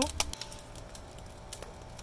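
Wood fire burning inside an earthen clay oven, the freshly added firewood crackling with quick, irregular, fairly soft snaps.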